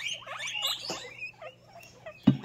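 Guinea pigs giving a few short, high squeaks in the first second, then fading quieter, with a light click about a second in.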